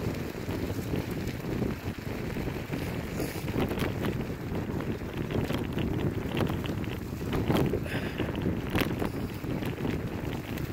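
Wind rushing over the microphone of a moving kick scooter, a steady low rumble, with tyres rolling over a wet dirt road. Scattered sharp clicks and crunches come from the wheels and gear.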